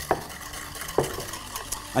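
Wire whisk beating egg yolks and sugar in a ceramic bowl, creaming the yolks: a steady run of light ticks from the wires against the bowl with a wet swishing. There are two louder clicks, one near the start and one about a second in.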